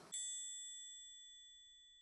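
A single bright bell-like ding that strikes just after the start and rings on with a clear high tone, fading away slowly.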